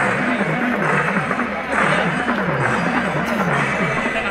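Babble of a large outdoor crowd, with a low tone that wavers steadily up and down about twice a second throughout.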